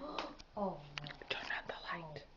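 Hushed voices whispering, with a couple of short voiced murmurs that fall in pitch near the start.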